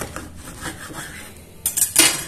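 Knife sawing through a dense azuki bean loaf full of nuts and seeds on a wooden cutting board, in quick repeated strokes, with a few sharper clacks near the end.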